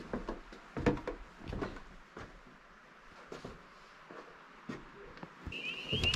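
A few soft, scattered knocks with quiet in between, and a thin, high, steady tone that starts near the end.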